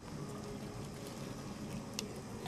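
Faint, steady background noise with no distinct event, and a single soft click right at the end.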